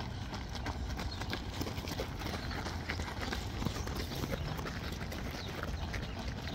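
Runners' footsteps crunching on a gravel path as a pack passes close by: many quick, irregular footfalls over a steady low rumble.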